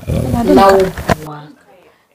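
A man's voice speaking for about a second, then cutting off into near silence.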